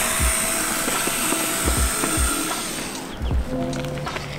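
Cordless power drill running with a steady whine, backing out screws to remove a Onewheel's battery; it stops about three seconds in. A music beat runs underneath.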